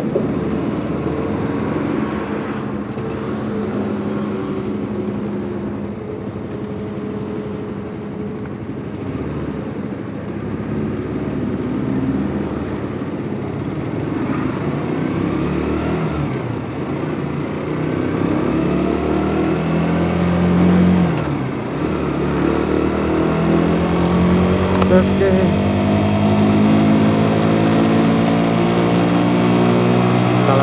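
Suzuki GSX-S150's single-cylinder four-stroke engine running at low speed, then from about two-thirds of the way in accelerating, its revs climbing with a short dip at a gear change before rising again.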